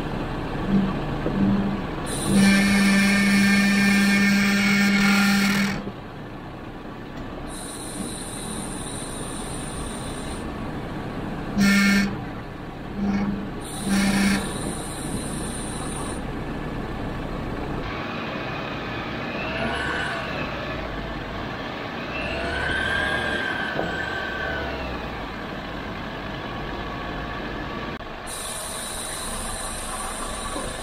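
Jeep Wrangler crawling along a rocky dirt trail, its engine and drivetrain running steadily under tyre noise. A loud, flat, low buzzing tone sounds in two short blips about a second in, is held for about three seconds, then comes back in three short blips around halfway.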